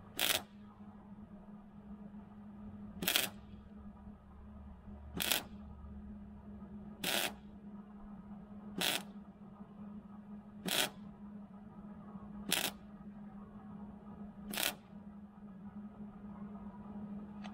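Electric arc welder struck in short bursts: about eight brief crackling arcs, roughly one every two seconds, stitch-welding the wedge back onto the splitter beam, over a steady low hum.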